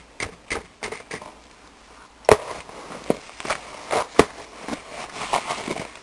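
Metal spoon chopping and scraping through caked homemade powder laundry detergent in a container, breaking up hardened clumps: irregular knocks and crunches, the two loudest a little after two seconds and about four seconds in.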